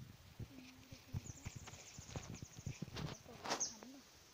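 Leafy weeds and dry stalks rustling and snapping as they are grabbed and pulled by hand: an uneven string of short crackles and clicks, with a louder crackling burst near the end.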